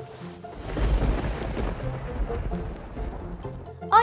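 A thunder rumble begins about half a second in, deepest at the low end, and dies away over about three seconds, with soft background music beneath it.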